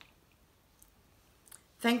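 Near silence with two faint clicks, then a woman's voice begins speaking just before the end.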